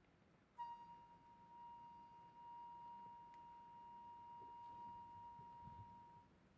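A quiet, single high, pure sustained note from an instrument of a Korean traditional orchestra, sounded sharply about half a second in and held steady for over five seconds over faint hall hush.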